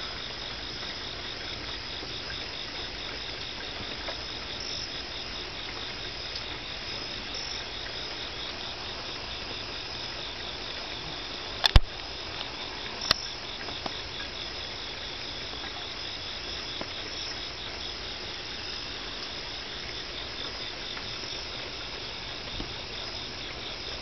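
Night insects chirping in a steady chorus, with an even, rapid pulse. Two sharp clicks come about halfway through.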